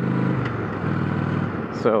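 Honda Shadow V-twin engine running as the motorcycle rides along at low speed, with a rough, steady low pulse and a hiss of wind noise over the microphone.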